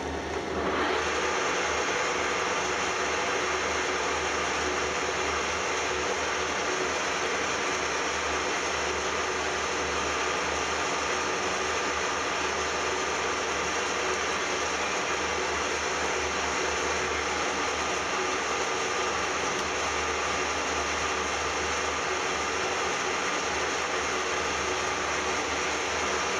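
Metal lathe starting up about half a second in, then running steadily, spinning a cast aluminium workpiece while a knurling tool is rolled into it in a single pass.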